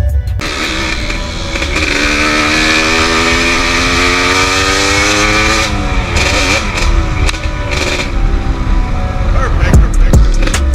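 Dirt bike engine heard from on board the bike, its pitch climbing steadily for about four seconds as it accelerates, then falling about six seconds in. Music comes back in near the end.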